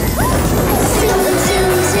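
Children's song music with a cartoon sound effect of a toy car speeding past: a noisy rush with a short rising whistle near the start.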